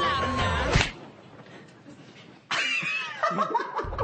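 Singing over music cut off by a sharp smack just under a second in, then a short lull and a burst of laughter.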